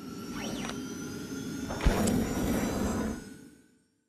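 Electronic transition sound effect: a brief rising-and-falling glide, then a sharp hit just under two seconds in with a louder noisy swell that fades away shortly before the end.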